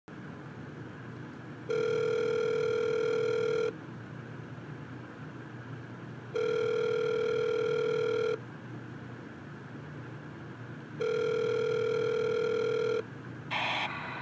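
A sound-module board's small speaker plays a recorded telephone ringing-out tone: three buzzy, single-pitched beeps of about two seconds each, a few seconds apart, over a steady low hiss. A short burst of crackle comes near the end, as the call connects.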